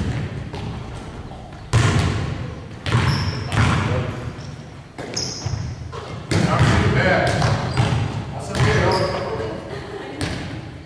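Basketballs bouncing on a hardwood gym floor: irregular thuds a second or two apart, each one ringing on in the large hall.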